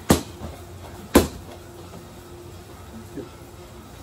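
Sharp smacks of gloved strikes landing during a kickboxing combination drill: one just after the start and a louder one about a second in.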